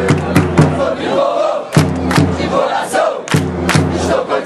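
Large crowd of football supporters chanting and singing together in a loud mass of voices, with sharp hits cutting through it.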